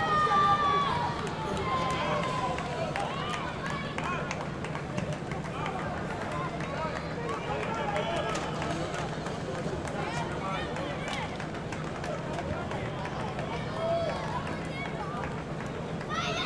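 Indistinct voices of players and staff calling out and talking across an open football pitch, heard from a distance, over a steady low hum.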